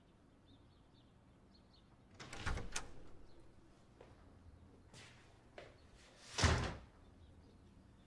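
A door being handled: a click and rustle a couple of seconds in, a few small knocks, then the door shutting with a heavy thud past the middle. Faint bird chirps sound underneath.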